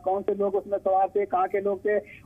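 A person speaking without pause, the voice thin and cut off above the midrange, as over a telephone line.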